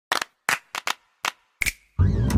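Six short, sharp clicks, irregularly spaced, with silence between them: sound effects of an animated logo intro.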